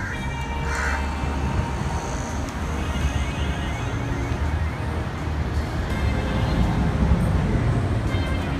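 Music playing over a steady low rumbling noise.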